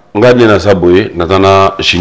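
Only speech: a man talking steadily.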